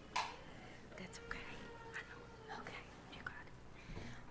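Faint whispering voices picked up by the microphones, with small handling noises and a brief knock just after the start.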